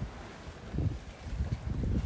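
Wind noise on the microphone over a low, uneven rumble aboard a sailing yacht under way.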